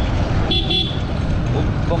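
Steady low rumble of a motorcycle ride through street traffic, with wind on the microphone, and a short high-pitched vehicle horn toot about half a second in.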